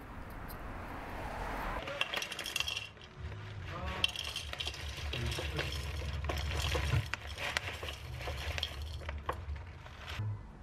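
Granola clusters poured from a foil bag into a ceramic bowl: many small, quick clinks and rattles against the bowl. A low hum runs underneath and cuts off about seven seconds in.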